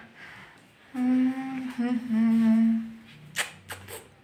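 A person humming with closed lips: two held, level notes, the second a little lower than the first, running from about one second in to nearly three seconds. A few short clicks follow near the end.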